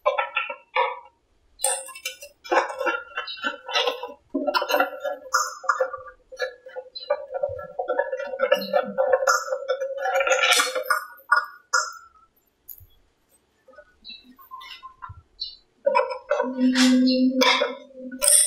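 Scattered clicks and clinks of a screwdriver and small screws as the screws around a Honda motorbike's plastic front handlebar cover are taken out. Under them runs a steady hum that stops about 11 seconds in and comes back near the end.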